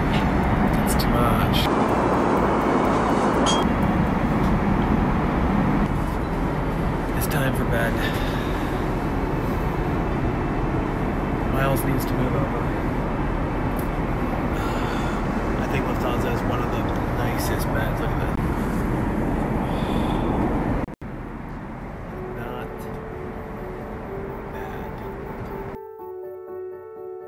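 A380 airliner cabin noise in flight, a steady roar of air and engines with scattered clicks and rustles close to the microphone. About 21 s in it cuts off abruptly, and soft music with held tones comes in.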